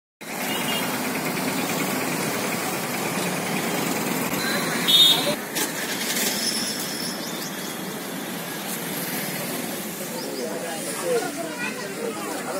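Outdoor ambience: a steady wash of traffic-like noise with indistinct voices. A short, loud, high-pitched sound comes about five seconds in, and the voices grow clearer near the end.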